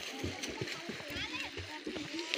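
Water splashing as children play in a shallow stream pool, with children's voices calling in the background.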